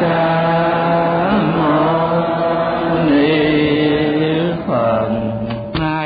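A male voice chanting in long, held notes that glide slowly from one pitch to the next: a Buddhist chant.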